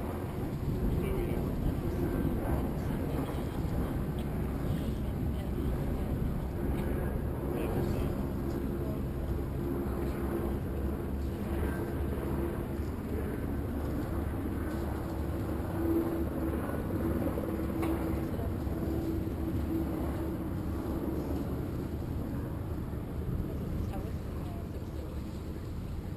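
Steady harbour-side wind noise with a low motor drone beneath it, the drone most noticeable in the middle of the stretch.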